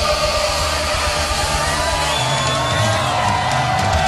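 Punk rock music: distorted electric guitars, bass and drums, with a crowd of voices shouting along in long held notes.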